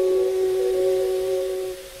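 Background music: a held instrumental chord of sustained notes that fades away near the end.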